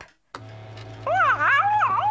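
A fax machine switches on with a click and a steady low hum as a fax comes in. About a second in, a cat sleeping on top of it lets out a startled yowl that rises and falls in pitch.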